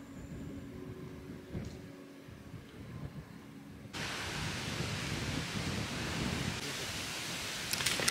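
Quiet outdoor ambience for the first half, then, from about halfway, a steady hiss of light rain falling on forest leaves, with a few raindrop taps near the end.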